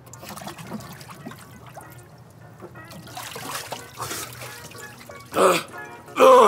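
Water trickling and sloshing in a cold-plunge barrel as a person moves in it, under quiet background music, with a brief louder burst near the end.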